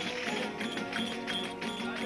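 A verdiales folk band playing live: violin over strummed guitars, with a steady rhythmic beat.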